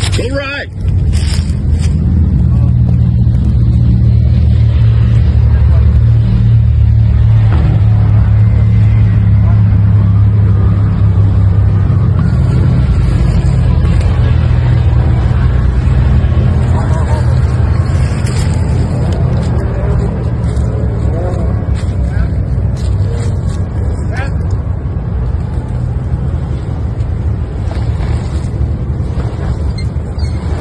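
Lexus GX470's 4.7-litre V8 running under load as the SUV crawls up through deep ruts on a dirt trail, a steady low engine note that is strongest in the first dozen seconds and then eases.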